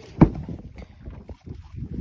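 A single thump about a quarter-second in, then wind on the microphone and faint knocks of gear being handled in a fishing boat.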